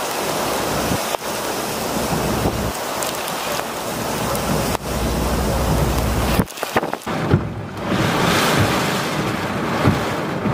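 Storm wind gusting and heavy rain pouring as a loud, dense noise, with gusts buffeting the microphone in low rumbles; the sound briefly drops out about six and a half seconds in.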